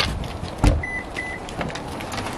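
A dull thump, then two short high beeps about a third of a second apart: a car's lock-confirmation chirp.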